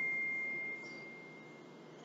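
A single high, pure ringing tone that holds one pitch and fades away over about a second and a half.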